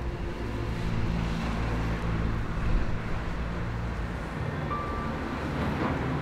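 Road traffic noise, a vehicle passing, swelling through the middle, over steady low sustained tones.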